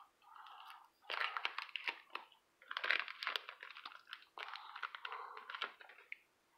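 Plastic wrapper of a hockey card pack crinkling and tearing as it is handled and opened, in three bursts of crackling.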